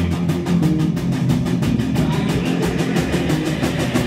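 Live alternative rock band playing electric guitar, bass guitar and drum kit, with a fast, even cymbal beat running through.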